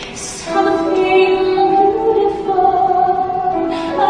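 A woman singing a slow ballad with long held notes over a soft, steady accompaniment. Her voice swells in about half a second in.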